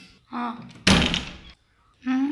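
A wooden door slamming shut once, a sudden loud bang that dies away within about half a second, just after a brief bit of voice.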